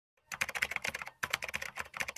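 Computer keyboard typing sound effect: rapid key clicks in two quick runs with a brief break about a second in, as text is typed into a search bar.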